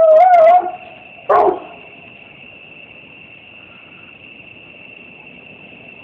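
A dog whining at a high, wavering pitch that stops about half a second in, then one short yelp a little over a second in; after that only a faint hiss.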